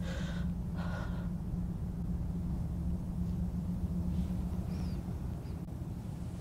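A woman gasps twice in quick succession in the first second, short shaky breaths, over a steady low rumble that fades near the end.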